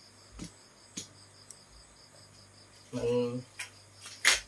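A cricket chirping in a fast, even pulse that runs throughout, with two faint clicks in the first second.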